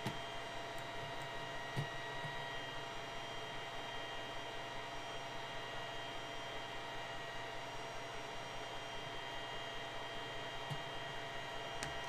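Steady electrical hum and hiss, with a few faint clicks about two seconds in and near the end.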